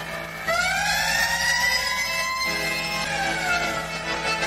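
A siren-like wail over held organ tones: a pitched sound that rises smoothly for about two seconds, holds, then falls away.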